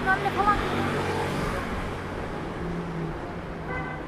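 City street ambience: car traffic running along the road, with a person's voice in the first second and a brief tone near the end.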